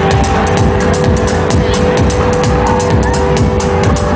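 Live electronic band playing through a loud PA, heard from the crowd: heavy bass and kick drum with regular hi-hat ticks under a held chord that shifts right at the end.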